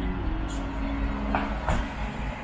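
Steady low rumble of street traffic, with background music fading out about one and a half seconds in.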